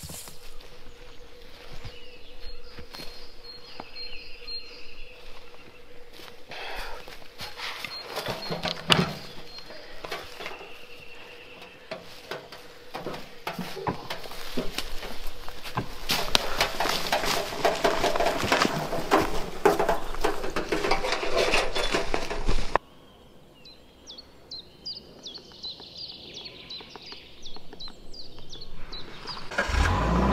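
Firewood work in a beech wood: split beech wood knocking and clattering as it is axed and handled, with a loud knock about nine seconds in, then a dense rattle like a loaded wheelbarrow pushed over leaf litter. A sudden cut leads to a quieter stretch with birds chirping.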